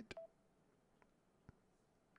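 Near silence, broken just after the start by a click with a short beep, then two faint clicks about a second and a second and a half in: a phone being handled and tapped to take a picture.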